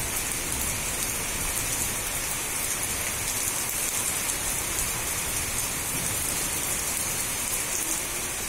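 Steady rain falling on garden plants and leaves, an even, unbroken hiss with fine drop ticks throughout.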